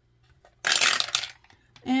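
Dice rattling as they are rolled in a small wooden dice box: one dense clatter lasting under a second, starting about half a second in.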